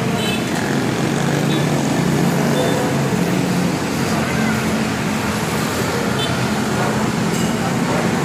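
Steady street traffic: cars and motorcycles passing on a busy road, a continuous mix of engine hum and tyre noise.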